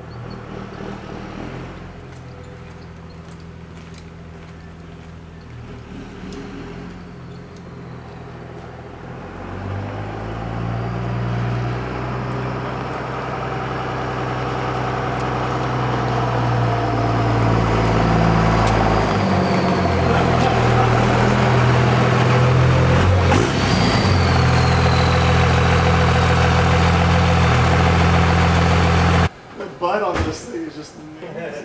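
2002 Dodge Ram dually's 24-valve Cummins diesel running at low speed, growing steadily louder as the truck drives up and pulls in close, then cutting off suddenly just before the end.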